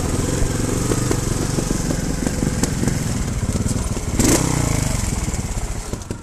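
Trials motorcycle engine running at low speed on a rough track, with a brief, louder rev about four seconds in.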